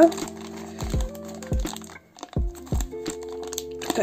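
Plastic blind-bag wrapper crinkling in the hands as it is twisted and pulled at, hard to tear open, over background music with a bass beat.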